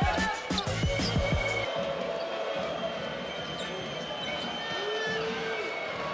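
Background music with a steady beat cuts off suddenly a little under two seconds in. Arena game sound follows: steady crowd noise with a basketball being bounced on the hardwood court.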